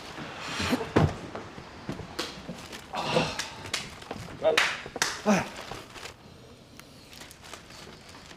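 A man's voice in a few short bursts, like brief exclamations or fragments of speech, falling quieter about six seconds in.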